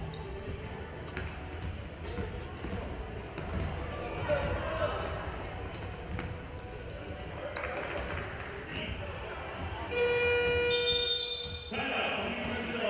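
Basketball game on a hardwood court: a ball bouncing and players calling out, with short high squeaks. About ten seconds in, the game-clock buzzer sounds one loud steady tone for about two seconds, marking the end of the game.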